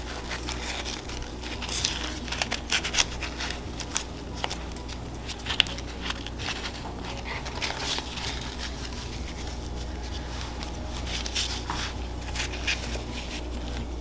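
Dried corn husks crinkling and crackling in the hands as a tamal is folded and tied shut with a strip of husk, in short irregular rustles.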